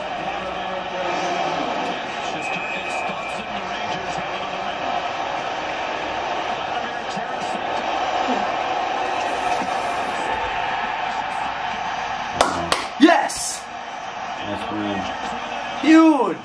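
Steady crowd noise from a televised hockey shootout in an arena. Near the end come a few sharp smacks and a short shout.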